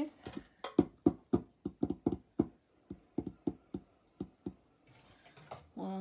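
A quick, irregular run of small knocks and clicks, about four a second, as objects are handled and knocked about while rummaging for a lost item; it stops about four and a half seconds in.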